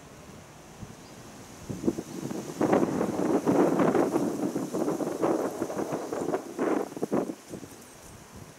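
A gust of wind buffeting the microphone and stirring the treetops. It comes up about two seconds in, stays gusty and uneven for several seconds, and dies away near the end. A faint steady high hiss runs underneath.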